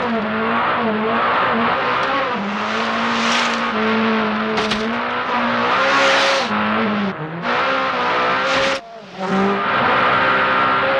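Peugeot 208 T16 Pikes Peak race car's twin-turbo V6 running hard under load, its pitch stepping up and down with gear changes, with bursts of tyre and gravel noise. The sound breaks off briefly near the end.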